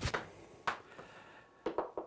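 A struck golf ball dropping back off a simulator screen and bouncing on the floor: a few light knocks, one about two-thirds of a second in and a quick pair near the end, after the fading tail of the shot's impact.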